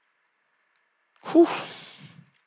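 A loud sigh about a second and a half in, after near silence: a short voiced onset trailing off into a long breathy exhale.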